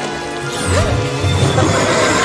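Dramatic film score over crashing sound effects from a giant plant monster, with heavy low thuds through the middle and a short creature-like cry under a second in.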